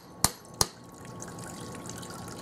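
Two sharp knocks about a third of a second apart as a kitchen knife strikes a whole coconut to crack its shell, followed by a faint trickle of coconut water running into a bowl.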